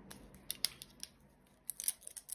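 A few short, sharp clicks and snaps: a pair about half a second in, another near one second, and a quick cluster near the end.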